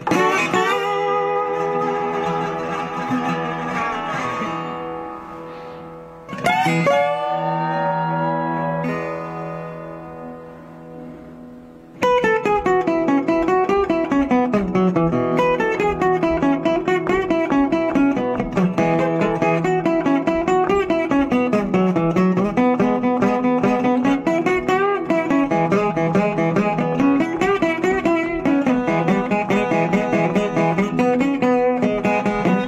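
National Tricone resonator guitar: two chords struck and left ringing, the second with a bend in pitch, then a steady, fast fingerpicked rhythm over a bass line that rises and falls.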